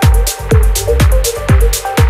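Progressive house track with a four-on-the-floor kick drum at about two beats a second. Hi-hats tick between the kicks over a deep bassline and a synth line.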